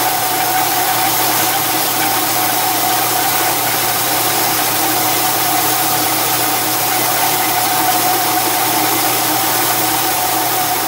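Metal lathe running steadily while turning a large steel sleeve: a constant whine over an even hiss, with no change in speed.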